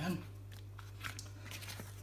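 A black leather passport holder being handled and pressed flat on a countertop: a few faint scuffs and soft clicks, over a steady low hum.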